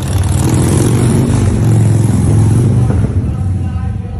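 Motor vehicle engine running loudly close by: a steady low hum under a broad rush that eases off near the end.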